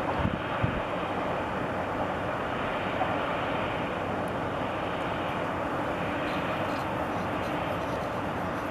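Steady city background noise: a continuous even rumble and hiss with no distinct events, apart from a couple of soft knocks in the first second.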